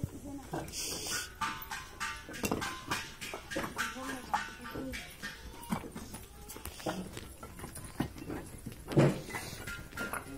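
Fired clay bricks clinking and knocking against each other as they are picked up and stacked by hand, a rapid irregular series of sharp clacks, with one heavier knock near the end. Workers' voices call out over it.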